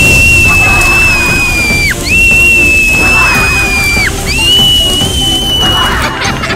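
Cartoon steam-whistle sound effect, like a kettle at the boil: a steady high whistle blown three times for about two seconds each, each ending in a quick drop in pitch, the comic sign of someone fuming with anger. Music plays underneath.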